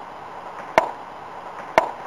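Two sharp pops about a second apart, typical of a baseball smacking into a leather glove as the third strike is caught.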